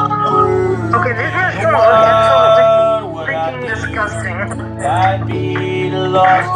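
Electronic keyboard playing held chords over a steady bass note, with a voice singing along in a wavering, wordless line over the chords.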